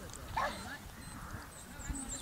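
A dog gives a single short yelp about half a second in, over wind rumbling on the microphone.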